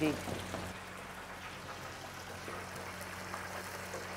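Batter-coated chicken lollipops deep-frying in hot oil: a steady, even bubbling hiss, with a faint low hum underneath.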